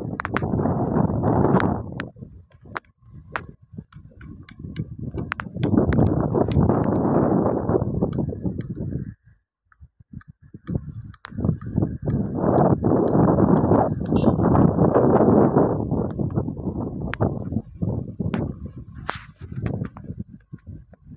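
Wind buffeting the microphone in gusts: a rough rumbling noise that swells and fades, nearly dropping out about halfway through, with scattered sharp clicks and knocks.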